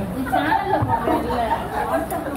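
Voices talking in the background: overlapping chatter.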